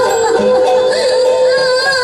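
Live Bhawaiya folk music: a long held, slightly wavering melody note carries through, with faint low beats beneath it.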